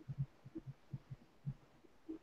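Faint, soft low thumps, about ten in irregular succession, with nothing high-pitched in them.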